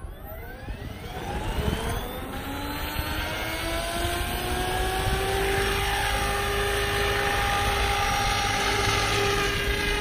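SAB Goblin Black Thunder 700 electric RC helicopter spooling up: the motor and rotor whine rises steadily in pitch over the first few seconds, then holds at a steady head speed as it lifts off and flies.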